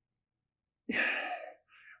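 A person's short breathy sigh, about half a second long, about a second in, with a fainter breath just before speech resumes.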